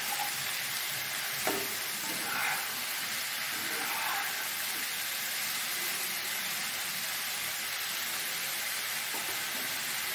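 Mushrooms sizzling steadily in hot oil in a nonstick wok, with a metal spatula scraping and tossing them during the first few seconds and a sharper knock about a second and a half in.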